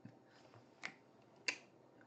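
Two short, sharp clicks about two-thirds of a second apart, over faint room noise.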